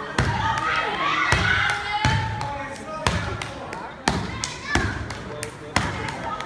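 Stepping: boot stomps and body slaps or claps from a solo stepper on a wooden stage, sharp single beats about every half-second to a second. Audience voices call out over the beats.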